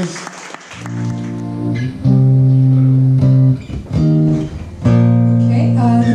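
Amplified acoustic guitar, a few chords strummed and left to ring, with a short break near the middle.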